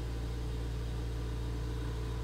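Steady low hum of background room noise, with a few faint steady higher tones above it and no distinct events.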